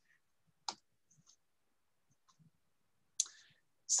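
Near silence broken by two short clicks, one just under a second in and one near the end.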